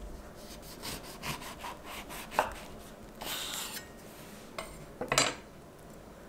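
A lemon rolled and pressed under the hand on a bamboo cutting board to loosen its juice: a run of quick rubbing strokes on the wood, a sharp knock about two and a half seconds in, a short rasp, then louder knocks on the board near the end.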